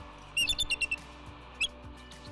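Bald eagle's high piping call from the nest: a quick run of about six short notes, then one more a moment later. It is the call that brings the other eagle back to drive off an approaching fox.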